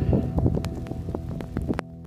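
Wind buffeting the camera microphone, with irregular clicks and knocks, over background music with held notes. The outdoor sound cuts off suddenly near the end, leaving the music's notes fading.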